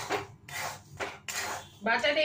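Metal spatula scraping through hot salt and black chickpeas in a metal wok, in about four separate stirring strokes, as the chickpeas are dry-roasted in the salt.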